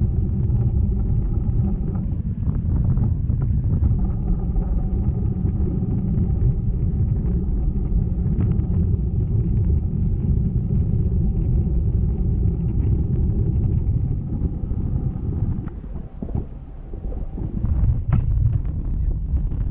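Wind buffeting the microphone of a camera rigged on a parasail in flight: a steady low rumble with faint steady hums above it, easing briefly near the end.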